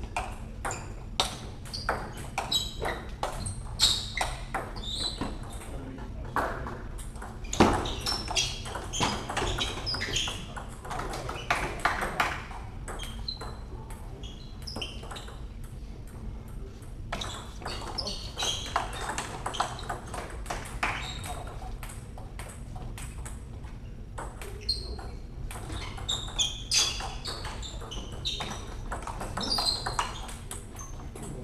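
Table tennis ball clicking back and forth between bats and table in a rally during the opening seconds, then a pause between points with only scattered clicks, then another rally near the end.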